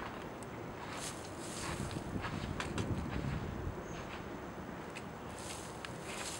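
Hudson Porta Flame Sprayer, a pressurised kerosene torch, burning with a steady rushing noise. Scattered footsteps and rustling in dry leaves.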